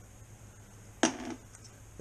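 A single sharp click about a second in, with a short ring after it, from a small clear plastic tube of jig heads being handled. Otherwise only faint handling noise.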